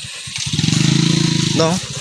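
A motorcycle engine running close by, growing louder over the first half second and then holding steady at one pitch.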